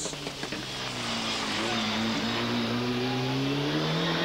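Ford Escort RS Cosworth rally car's turbocharged four-cylinder engine accelerating, its pitch rising steadily from about a second in.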